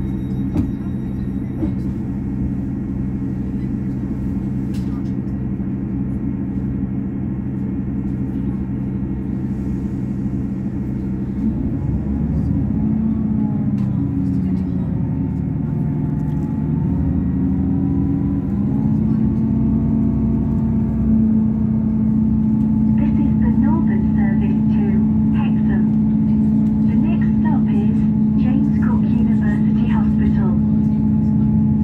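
Underfloor diesel engine of a Northern class 158 DMU idling steadily, then changing note about a third of the way in as the train pulls away and settling on a higher, louder steady drone as it gathers speed.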